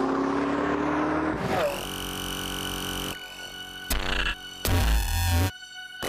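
Ford GT's V8 accelerating away, its note rising slowly for about the first second and a half, then synthesizer music with steady held tones and two heavy low hits near the end.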